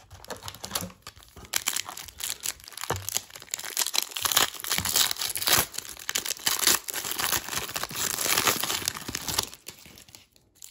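Foil wrapper of a baseball card wax pack crinkling and tearing as it is ripped open by hand, a continuous run of crackles.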